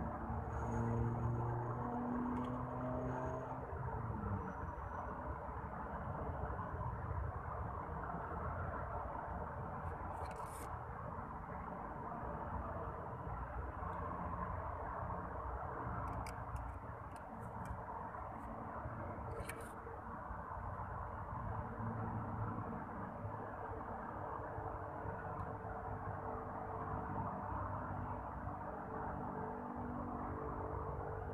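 Steady rumble of distant road traffic, with a few brief clicks around the middle.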